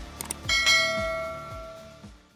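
A notification-bell chime sound effect, struck about half a second in with a second strike just after, ringing and fading away over the next second and a half. Two quick clicks come just before it, and under it runs background music with a deep kick drum about twice a second.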